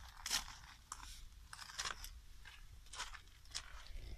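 Faint, irregular crunching footsteps on a gravel terrace, about two a second.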